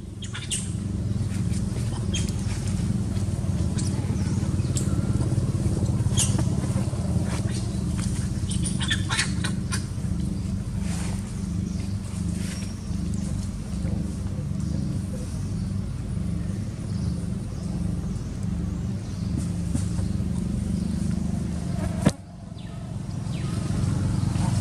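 A steady low engine hum, like a motor idling, with scattered short clicks and rustles over it; the sound breaks off suddenly about 22 seconds in and comes back a moment later.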